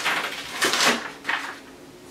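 Paper rustling in a few short swishes as printed rice paper is peeled back from a gel printing plate and card tags are handled, dying down near the end.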